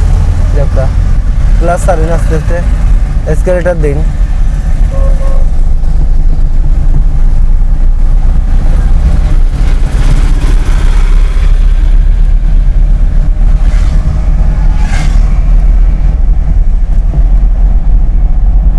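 Steady low rumble of a Toyota Corolla's engine and road noise heard from inside the cabin while it drives along a road. A voice speaks briefly in the first few seconds.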